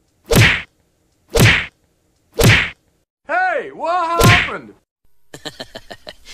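Three loud whacks about a second apart, then a swooping, wavering pitched sound with a fourth whack inside it, in the manner of added comedy sound effects.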